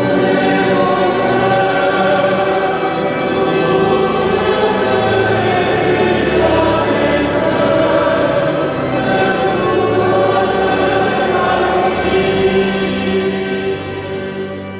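Choir singing a sacred chant with long, held notes, echoing in the stone nave of a large cathedral.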